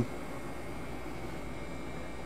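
Steady hum and hiss of a boat cabin's air conditioning, with a faint thin whine above it.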